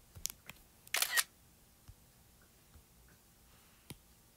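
iPad screenshot shutter sound, a short camera-shutter click about a second in, with a few light clicks just before it and one sharp tap near the end.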